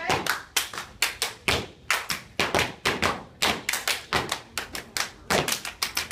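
Dancers clapping and stomping on a hard floor: a quick, slightly uneven run of sharp claps and foot hits, about five a second.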